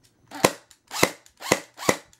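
Custom M4-style airsoft electric gun (AEG) with a custom gearbox, test-fired on battery power: four single shots about half a second apart. Each shot is the gearbox cycling, which shows the gun works.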